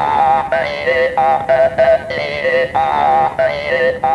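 Hmong jaw harp (ncas) playing a speech-like phrase, its bright overtones jumping from note to note every quarter to half second over a steady drone. The phrasing carries Hmong words, the jaw harp being used to 'speak' a message.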